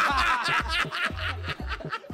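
Men laughing in quick repeated chuckles right after a joke, with background music underneath.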